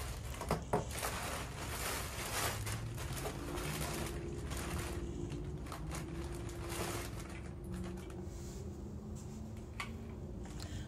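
Clear plastic bag rustling and crinkling as cords are rummaged through inside it, with a couple of light clicks about half a second in.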